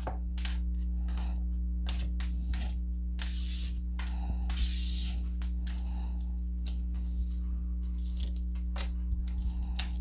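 Tarot cards being drawn from a deck and laid on a table: several brief sliding, swishing sounds. Under them runs a steady low electrical hum.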